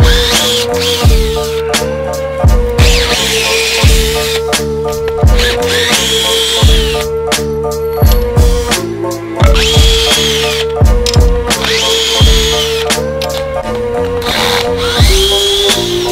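Electronic background music with a steady kick-drum beat, over which a cordless drill-driver runs in about six short bursts, each whine rising, holding and falling as the motor spins up and stops.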